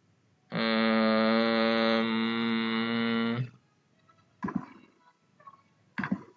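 A man's voice holding a long, level 'uhhh' at one steady pitch for about three seconds, starting about half a second in. A couple of faint short clicks follow near the end.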